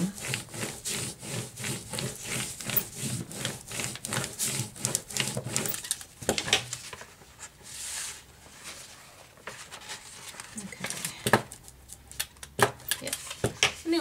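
A rubber brayer rolled back and forth over a manila envelope, a rolling rumble with many quick knocks for about the first six seconds. After that come softer paper-handling sounds and a few sharp taps near the end.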